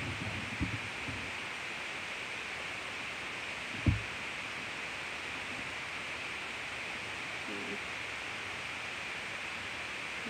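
Steady background hiss, with a single dull low thump about four seconds in and a few faint soft knocks.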